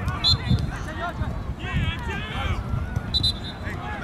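Indistinct voices of players and spectators calling out on a soccer field, several overlapping, none clear enough to make out words, over a low rumble.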